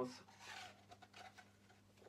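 Faint rustling and scraping of red abrasive paper (sandpaper) being pulled out by hand.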